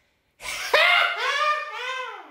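A drawn-out vocal exclamation: one voice holding a high, wavering note for over a second that falls in pitch and fades out at the end.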